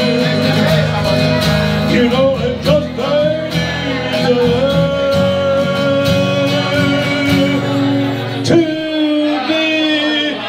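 Live acoustic country-folk song: an acoustic guitar is strummed under a sung melody of long held notes, with a sharp strummed accent and a change of chord about eight and a half seconds in.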